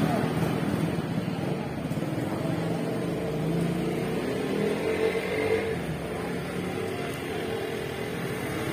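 Street traffic: scooter, motorcycle and car engines running steadily close by, with people's voices faintly in the background.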